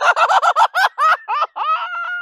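A man laughing loudly in a high pitch: a rapid run of short 'ha' bursts, about eight a second, that slows after about a second and draws out into a longer held note near the end.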